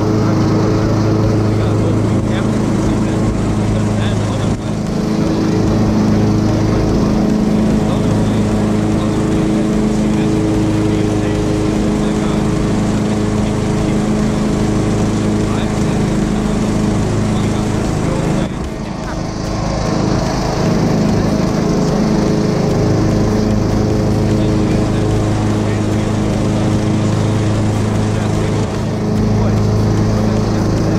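Petrol lawn mower engine running steadily and loudly close to the microphone, one even drone that dips briefly about two-thirds of the way through.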